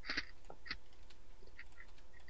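A handful of short, irregular computer mouse clicks over a faint steady electrical hum, as menus are worked in 3D software.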